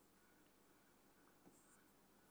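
Near silence, with only a few faint taps and scratches of a stylus writing on a digital interactive whiteboard.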